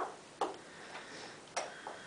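Footsteps on a hard floor, a sharp tap about every half second as someone walks away.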